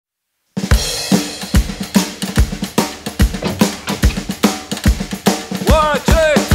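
Drum kit playing a steady country-rock beat with kick drum, snare and hi-hats, starting about half a second in. Near the end, pitched sliding notes join in as the full band comes in.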